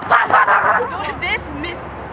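A person's wordless yell, loud in the first second, followed by a few shorter, quieter cries.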